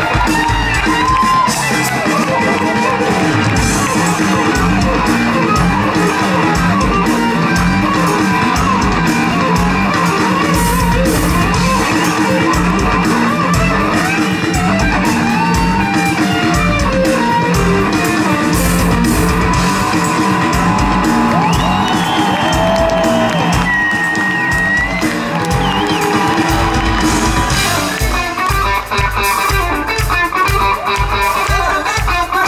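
Live rock band playing an instrumental passage: an electric guitar solo with sustained, bent notes over bass and drums. The guitar is played held up behind the player's head.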